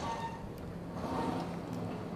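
Quiet outdoor street ambience: faint background hiss with a steady low hum.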